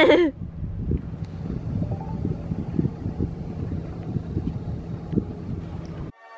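Wind buffeting the microphone: a low, rough rumble with irregular gusts, after a brief laugh at the start.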